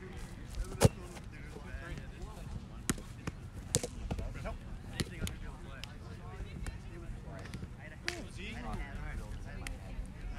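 A handful of sharp, single smacks of roundnet balls being struck, the loudest a little under a second in, over steady distant chatter of people on the field.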